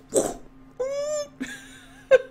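A short puff of breath or a cough, then one high-pitched vocal squeak, about half a second long, rising and falling in pitch.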